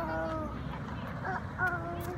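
A small child's wordless vocalizing: two drawn-out high-pitched calls, one at the start and a second a little over a second in.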